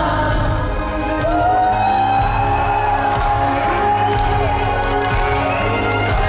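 A 1980s French pop song performed live in a concert hall: a voice sings over a band with a steady bass beat, holding one long note from about a second in until past the middle, with crowd noise underneath.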